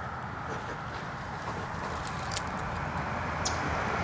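Steady outdoor background noise, a low even rumble, with a few faint brief high ticks.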